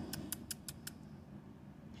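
A quick run of five sharp, high clicks in the first second, evenly spaced about five a second, then faint background.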